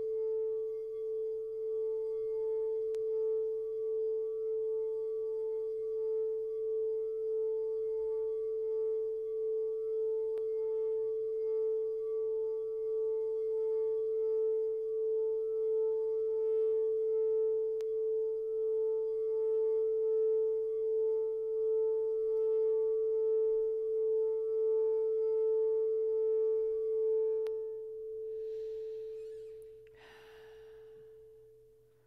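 Frosted quartz crystal singing bowl sung by a wand circling its rim: one steady, slowly pulsing tone with fainter higher overtones. Near the end the wand is lifted, the overtones stop and the note rings on more softly.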